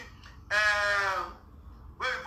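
A single drawn-out vocal call of about a second, one held note with its pitch dipping at the end.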